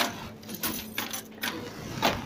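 Scattered rustling and light clattering from a praying congregation, a few short bursts over a faint steady hum.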